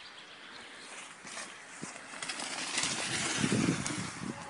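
Mountain bike rolling down a trail of dry fallen leaves and passing close by, its tyres rustling through the leaves. The sound grows from faint to loudest about three to four seconds in as the bike goes past.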